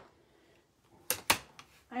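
Two sharp clacks about a second in, a fifth of a second apart, as clear acrylic cutting plates and a die-cutting platform are set down on a wooden desk.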